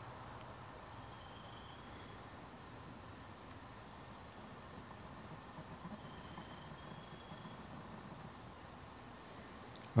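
Faint steady background hiss and low hum, with two brief, faint, thin high tones, about a second in and about six seconds in.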